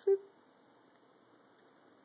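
One short voiced 'heh' from a man at the very start, a brief chuckle, followed by quiet, steady room hiss.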